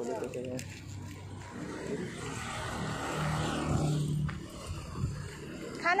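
A road vehicle passing close by, its noise swelling for about three seconds and then quickly dropping away.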